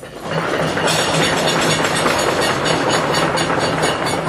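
Audience clapping loudly as a vote for answer A, a dense run of irregular claps that builds about a quarter second in.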